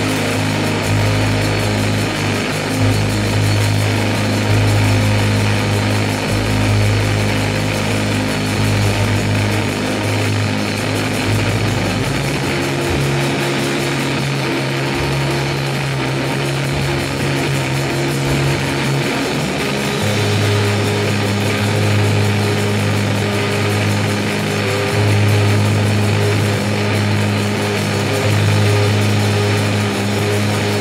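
Live rock band playing an instrumental passage: electric guitar and bass guitar with drums, in a dense, loud wall of sound. Long held bass notes shift to new pitches about twelve and twenty seconds in.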